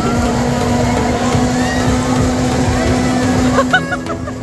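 A spinning Scrambler-style amusement ride running, its drive giving a steady mechanical hum with one constant tone, and riders' voices over it.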